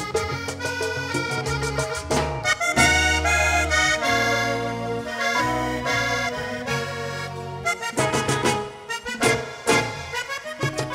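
Diatonic button accordion playing a fast instrumental vallenato passage in quick note runs, backed by bass and congas, with no singing.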